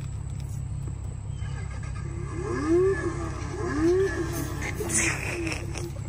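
A ride-on toy Jaguar F-Type car's built-in speaker playing its engine start-up sound effect: a few rising-and-falling revs, starting about two seconds in, over a steady low rumble.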